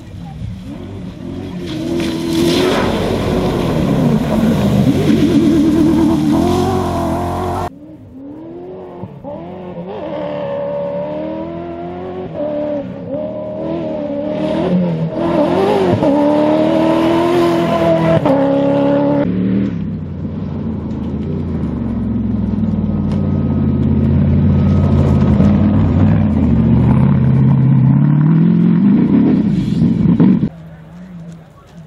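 Cross-country rally cars, among them a Toyota Hilux, accelerating hard on gravel with engines revving up and down as they pass. Three separate passes, each breaking off suddenly into the next.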